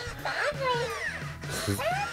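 Hatchimals WOW Llalacorn interactive toy making high-pitched electronic chirps and giggle-like vocal sounds that glide up and down in pitch. It has just woken and is reacting to sound.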